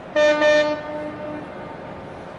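A horn blast: a short, loud, steady-pitched blast with a brief dip in the middle, trailing off fainter and stopping about a second and a half in.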